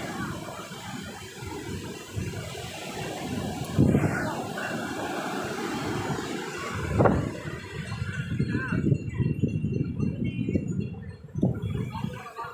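Ocean surf washing up a sandy beach as a steady rush, with wind buffeting the microphone and louder gusts about four and seven seconds in.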